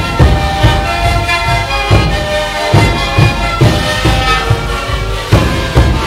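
A sikuris ensemble playing: a chorus of Andean siku panpipes sounding many held notes together over a steady beat of large bass drums (bombos).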